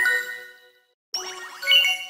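Edited variations of a Samsung phone startup chime, bright electronic notes in a quick rising run. One chime rings out and fades within about half a second, and after a short gap another version starts about a second in, climbing to a ringing peak before dying away.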